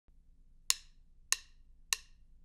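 Three sharp wooden percussion clicks, evenly spaced about 0.6 s apart, each with a short ringing tail: a count-in ahead of the band.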